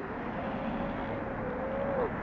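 Steady outdoor background noise with a faint, even hum held through the pause.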